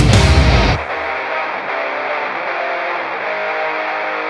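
Heavy metal band recording: the full band plays at first. About a second in, the drums and bass drop away and a distorted electric guitar riff carries on alone, sounding thin, as if filtered, with its bass and highest treble cut.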